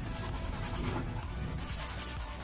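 Paintbrush stroking acrylic paint across a stretched canvas: a soft scratchy brushing in two spells, near the start and near the end.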